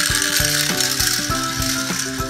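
Hot Wheels 24 Hours pull-back toy car's spring motor ratcheting and whirring as the released car runs across a tile floor.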